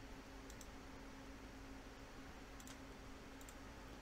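A few faint computer mouse clicks, spaced seconds apart, over a low steady room hum.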